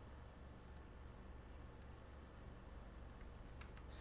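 Faint clicks of a computer mouse and keyboard: single clicks about a second apart, then a quick run of clicks near the end. A steady low electrical hum runs under them.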